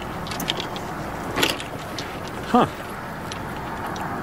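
Steady outdoor background hiss with a few faint clicks and a short burst of noise about one and a half seconds in. About two and a half seconds in, a person lets out a brief falling "huh?".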